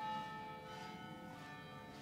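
Church bells ringing: a bell is struck right at the start, and its several tones hang and slowly fade over the ringing of earlier strokes.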